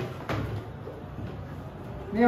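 Whiteboard marker writing on a whiteboard: a short scraping, squeaky stroke about a third of a second in, then faint room noise.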